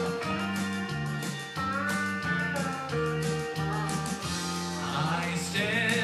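Instrumental music with a bass line moving under held notes: the introduction to a southern gospel song, before the singing comes in.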